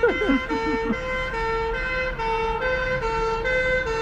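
Two-tone siren of a fire and rescue engine, stepping back and forth between two close pitches, with brief laughter over it in the first second.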